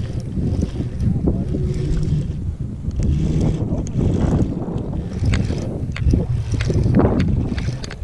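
Wind buffeting the camera's microphone, a loud steady low rumble, with scattered short clicks and rustles from handling close to the microphone.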